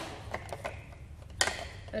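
Hollow plastic nesting-egg shells clicking and knocking as they are handled and pulled apart, a few sharp clicks with the loudest about a second and a half in.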